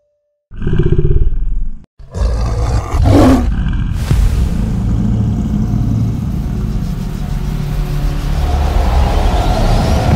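Sound effects for an animated logo reveal. A loud low boom comes about half a second in, then after a brief break a sustained low roaring rumble runs to the end. A falling whoosh sounds around three seconds in and a rising sweep near the end.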